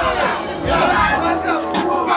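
A crowd of spectators yelling and shouting over one another, hyping up a krump dancer mid-battle.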